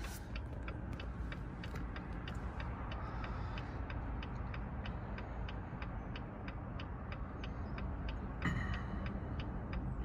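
Hazard flashers of a 2019 Jeep Compass ticking steadily, about three evenly spaced ticks a second.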